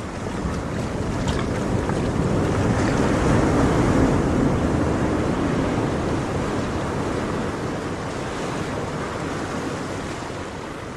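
Ocean surf: a wave swells in, loudest about four seconds in, then washes back and slowly fades.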